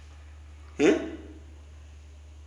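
A man's single short spoken 'Eh?' with a rising, questioning pitch, over a steady low hum.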